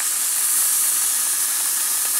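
Two burger patties sizzling in a cast iron skillet on a propane camp stove: a steady, high hiss that grows slightly louder just after the start.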